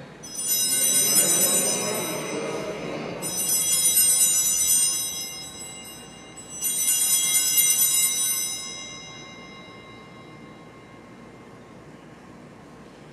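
Altar bells rung three times, each a bright, high ringing lasting two to three seconds. They mark the elevation of the consecrated host at Mass.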